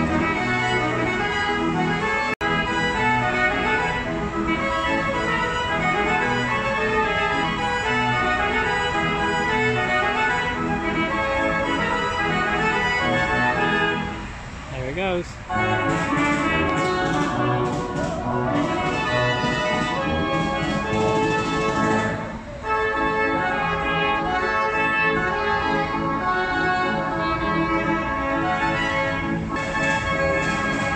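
Carousel band-organ music playing continuously, with brief dips in level about halfway through and again about two-thirds of the way in.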